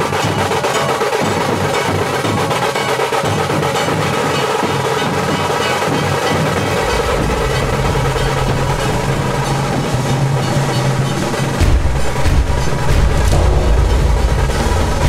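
Dhol-tasha troupe drumming: fast, dense beating of tasha drums over dhol. A deep low bass comes in about halfway and grows louder near the end.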